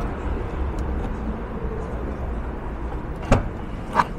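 Steady low background rumble, then a sharp click a little over three seconds in and another near the end as the Honda Crider's trunk latch releases and the lid lifts open.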